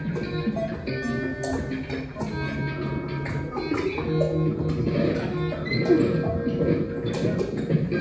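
Improvised experimental music from electronics and amplified objects: many held tones layered over one another, with frequent clicks and plucked-sounding notes.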